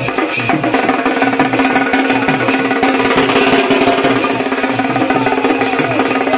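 Dhak drums beaten with thin sticks in a fast, driving rhythm, with a smaller stick-played drum and small metal hand cymbals clashing along, and a steady ringing note underneath.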